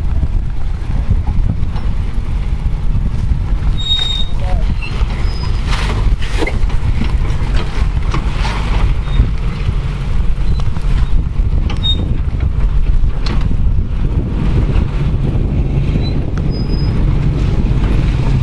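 Land Rover Discovery's engine running at low speed as it crawls over boulders and then drives past close by: a steady low rumble.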